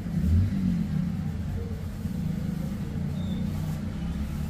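Low rumble of a motor vehicle engine, with a wavering pitch, loudest about half a second in.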